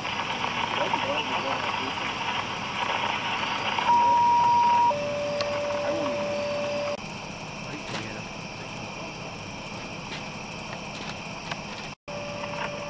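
Radio scanner hiss, then a two-tone dispatch paging alert: a higher steady tone for about a second, dropping straight to a lower steady tone for about two seconds, followed by quieter hiss.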